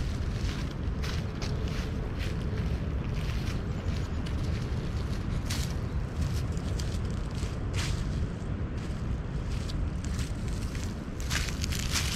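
Footsteps crunching through dry leaf litter, irregular crisp rustles as a hiker walks past, over a steady low rumble.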